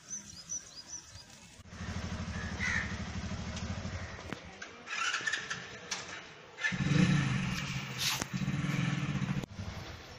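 A motorcycle engine running close by, loud from about two seconds in, easing off midway and coming back louder for about three seconds near the end. Small birds chirp in the first second.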